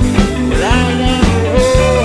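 Blues band recording: drums and a bass line keep a steady beat while a lead instrument bends up into held notes.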